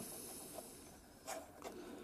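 Faint handling of a plastic record-player cartridge being pushed into the tonearm head, with two small clicks a little past halfway.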